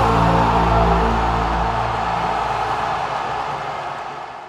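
Closing logo music sting: a held chord over a low rumble, slowly fading out and tailing off near the end.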